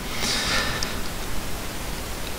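Steady background hiss of a voice-over microphone, with a faint, short, breath-like rustle about half a second in.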